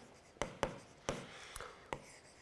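Stylus writing on a tablet screen: about five light taps and ticks with faint scratching between them, as characters are written.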